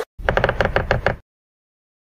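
Video-editing transition sound effect: a rapid, even run of about a dozen knocking clicks lasting about a second, starting just after the beginning and cutting off.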